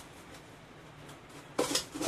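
Steel top of a propane forge lifted off its body: a short metallic clatter and scrape near the end, after a second and a half of quiet.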